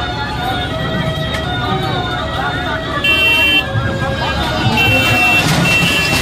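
The din of a large street procession crowd, with many voices overlapping, broken by several short high toots about three seconds in and twice more near the end.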